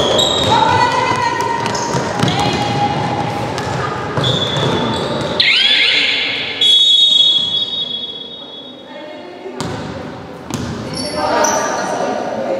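Sounds of an indoor basketball game: a basketball bouncing on a wooden gym floor with sharp knocks, players' shouts, and a long high-pitched tone about five and a half seconds in, all echoing in a large hall.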